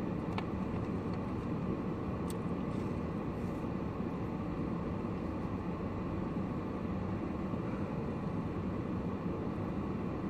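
Steady low rumble of noise inside a car's cabin, with a single faint click about two seconds in.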